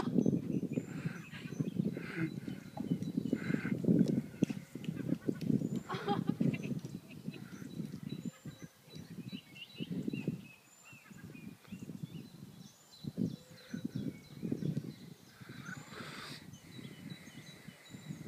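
Two dogs play-fighting, with irregular growls, grunts and scuffling that come and go in bursts.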